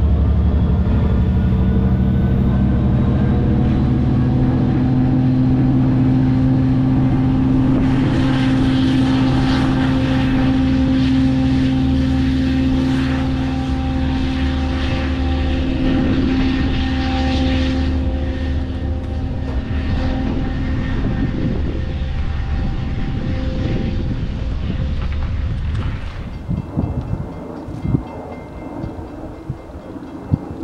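LIRR diesel-hauled train pulling away: a steady low diesel engine drone with wheel-on-rail rumble, the rushing wheel noise swelling in the middle, then both fade as the train recedes. Near the end it gives way to quieter wind noise with a few sharp knocks.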